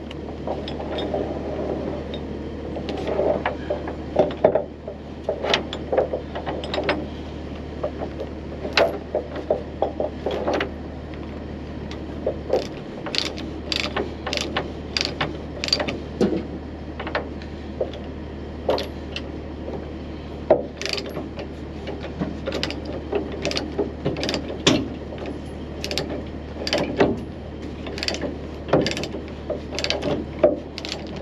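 Steel tie-down chain clanking and rattling against a trailer deck as it is hooked and tightened with a chain binder, with irregular sharp metal clicks throughout over a steady low hum.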